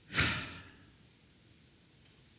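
A man's breath out, a short sigh into a headset microphone, just after the start and fading within about half a second; then faint room tone.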